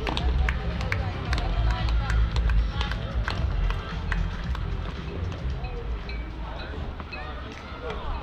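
Outdoor court-side ambience: a steady low rumble, many short sharp clicks at irregular intervals, and faint distant voices.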